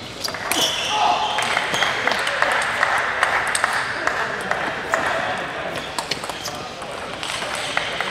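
Table tennis rally: the ball clicking sharply off bats and table in a series of quick taps, with voices in the hall.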